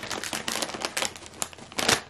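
Plastic crisp packet of Wotsits crinkling as it is handled, a run of sharp crackles with the loudest near the end.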